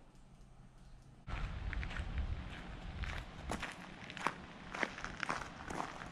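Quiet room tone, then about a second in footsteps on gravel begin abruptly: irregular crunching steps over a low rumble.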